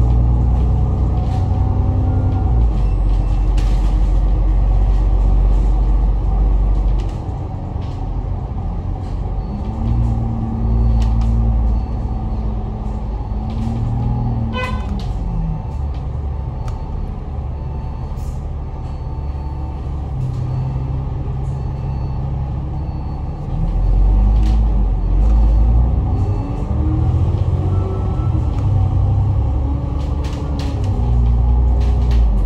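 Citybus Alexander Dennis Enviro500 MMC double-decker's engine and drivetrain heard from inside the upper deck while under way. The engine note climbs and drops back several times as the automatic gearbox shifts, with a heavier low rumble under acceleration near the start and again about two-thirds through, and a brief beep about halfway.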